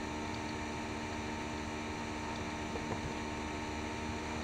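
Tornatürk T03 mini lathe running at a steady speed with an even motor hum while a hand-held blade turns a piece of amber in its chuck.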